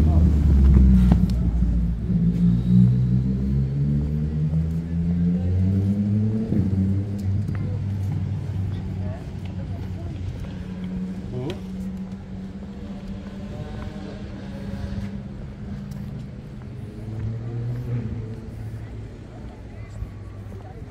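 A motor vehicle engine running and climbing in pitch in steps as it accelerates, loudest at first and then fading. Passers-by are talking.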